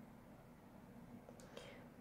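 Near silence: room tone with a faint steady hum, and a faint short hiss near the end.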